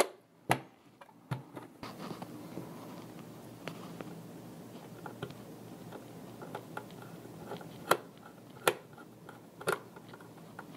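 Hand work on a sheet-metal ATX power supply case: a few sharp clicks and knocks of metal parts, over a low, uneven scraping and ticking as a screwdriver turns screws into the case.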